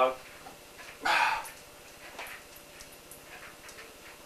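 A short, forceful exhale of effort about a second in, as a heavy barbell is lifted off the bench-press rack, followed by a few faint clicks.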